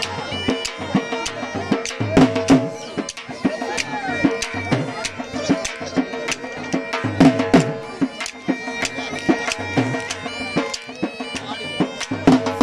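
Traditional Seraiki folk music for jhumar dancing: quick, steady drum beats, about three a second, under sustained wind-instrument tones, playing loudly throughout.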